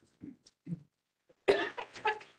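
A person coughing: one sudden, loud cough about one and a half seconds in, after two faint short sounds.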